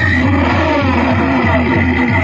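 Loud amplified folk music over a loudspeaker, with a quick, steady drum beat and a high held note.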